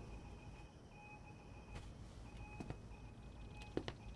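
Quiet room tone with a few faint clicks spread through the pause and a faint steady tone coming and going.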